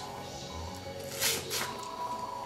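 Quiet background music, with a short soft crackle about a second in as the shell of a grilled head-on shrimp is pulled apart by hand.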